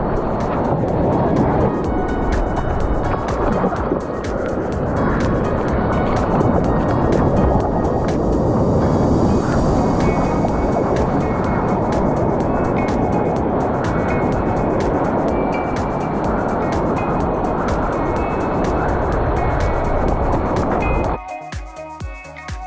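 Loud rushing, churning surf and water from a camera down in the breaking white water, with music playing under it. About 21 seconds in the water noise cuts off, leaving electronic music with a steady beat.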